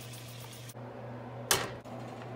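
Tap water running into a metal saucepan for about the first second, then a single sharp knock about a second and a half in, over a steady low hum.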